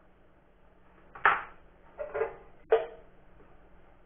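Small metal hand tools clattering as they are picked up and set down on a wooden workbench: a sharp clink about a second in, a double knock at about two seconds, and another sharp clink shortly after.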